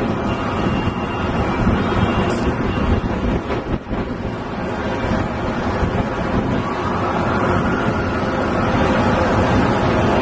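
Steady rumbling wind noise buffeting a camcorder's built-in microphone, dense and strongest in the low range, dipping briefly near the middle.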